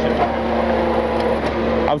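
A truck engine running steadily: an even low drone with a constant hum and no revving.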